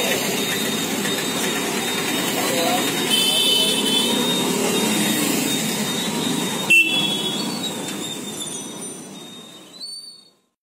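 Busy roadside street noise: traffic, background voices and a few short horn toots, over oil sizzling in a large frying wok. There is a brief bump just before seven seconds, and the sound fades out near the end.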